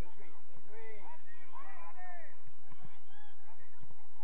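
Children's voices shouting and calling out during play, many short overlapping rising-and-falling calls.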